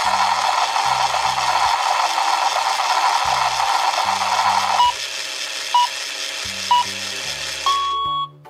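Battery-operated toy blender running its electronic blending cycle: a loud whirring sound for about five seconds, then dropping lower while its timer beeps about once a second, the last beep longer, as it counts down.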